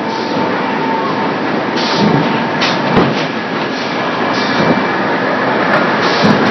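In-line extrusion and thermoforming production line for polypropylene flowerpots running: a dense, steady mechanical din with a faint steady whine and irregular knocks and clacks from the forming stations.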